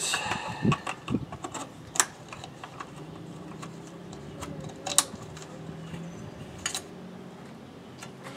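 Radiator fan motor wiring connectors being plugged in by hand: scattered small plastic clicks and rattles, the sharpest about two seconds and five seconds in.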